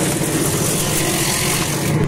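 Industrial vegetable slicer's electric motor running at its fast cutting speed while its blades slice a banana stem, with a steady hum and a high hiss. The hiss cuts off suddenly just before the end.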